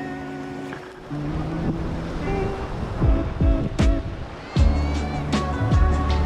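Background music with held chords over a low bass and sharp percussive hits, with a wash of sea and water noise beneath.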